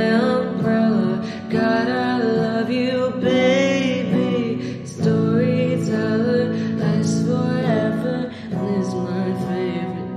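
A solo voice singing a slow, gentle melody over sustained instrumental accompaniment, phrase after phrase with short breaths between lines.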